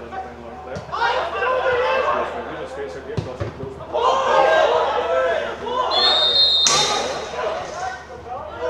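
Footballers shouting and calling to each other on the pitch, with the thud of the ball being kicked a few seconds in, and a brief high-pitched tone about six seconds in; almost no crowd noise.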